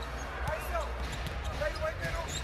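Basketball dribbled on a hardwood court, a few scattered bounces, over the steady hum and murmur of an arena crowd.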